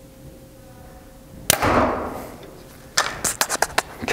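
Bowtech Core SR compound bow, drawn at 70 pounds, fired once about a second and a half in: a sudden sharp snap of the string that dies away over about half a second. Near the end comes a quick run of light clicks and rattles, which the archer puts down to a tag hanging on the bow.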